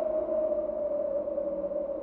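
Background score: a sustained electronic drone, one steady tone held with fainter lower tones beneath it.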